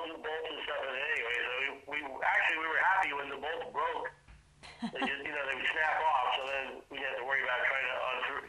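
Speech only: a man talking over a telephone line, his voice thin and narrow, with brief pauses between phrases.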